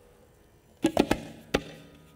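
Tabla: after a short quiet, three quick sharp strokes about a second in, then one more stroke half a second later.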